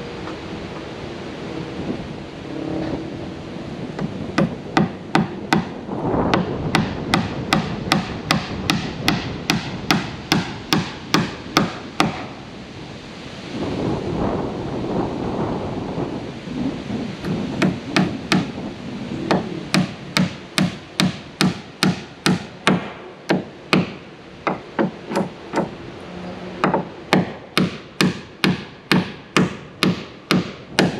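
Hammer driving nails into wooden board siding, in runs of two to three sharp blows a second with short pauses between nails. Wind rumbles on the microphone in the gaps.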